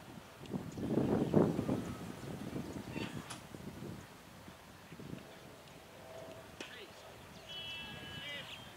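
Shouted calls and chatter from cricket fielders, loudest between about half a second and two seconds in, then fading to scattered calls.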